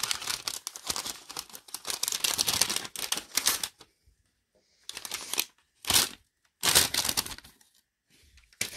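A patterned paper gift bag crinkling and rustling as it is opened and a ball of yarn is pulled out: a few seconds of dense crackling, a short pause, then three brief rustles.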